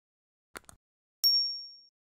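Animated subscribe-button sound effect: a couple of faint mouse clicks, then a single bright, high ding that fades away within about a second, the notification-bell chime.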